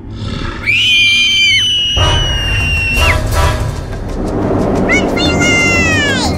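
Background music, with a long high-pitched scream that starts just under a second in and holds for about two seconds, then a second high cry that falls in pitch near the end.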